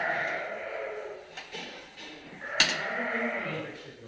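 Dorper sheep bleating: two long, hoarse bleats, the first fading out in the first second and a half, the second starting about two and a half seconds in.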